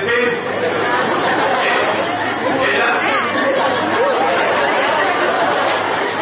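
Speech and overlapping chatter of several voices in a large hall, over a steady low hum.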